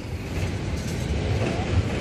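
Low, uneven rumble of wind buffeting the microphone, a little louder in the second half.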